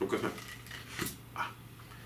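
Brief handling noises of a small metal tea tin as its lid is worked off, including a small click about a second in, mixed with a few short voice-like sounds.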